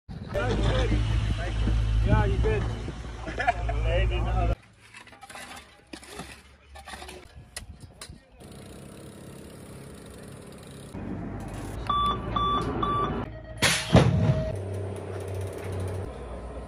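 Three short, evenly spaced electronic beeps, then a longer lower tone and a loud bang near the end: a BMX start gate's cadence lights and the gate dropping. Earlier, voices over a steady low rumble, then a quieter stretch of scattered clicks.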